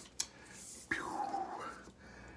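Quiet handling of a tenkara rod and its hard tube: a light click, then a brief sound that dips and rises in pitch.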